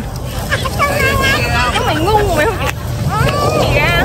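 Several people's voices talking in the background over a steady low rumble.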